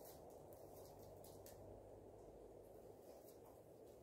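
Near silence: faint steady background noise.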